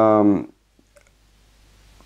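The tail of a drawn-out spoken word, then a near-silent pause with a few faint clicks.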